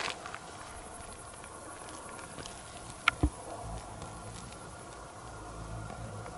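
Faint steady drone of insects on a summer night. A single sharp click comes about three seconds in, and a low rumble follows in the second half.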